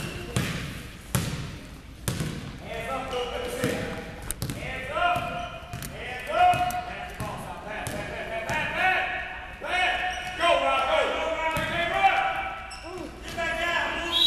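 A basketball bounces on the gym floor, several bounces about a second apart in the first few seconds, echoing in the large hall. Overlapping voices then call out over the play.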